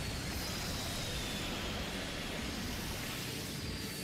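Animated energy-beam sound effect: a steady rushing noise with a faint high whine that slowly falls in pitch.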